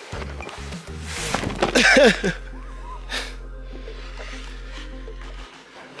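A man laughing briefly, over background music that holds a steady low note, with a few rustles of handling noise.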